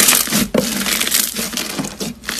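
A lump of crunchy slime squeezed and pressed between two hands, giving a dense crackling crunch. It is loudest right at the start and again about half a second in.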